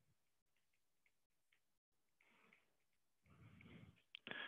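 Near silence: faint room tone, with a faint sound near the end.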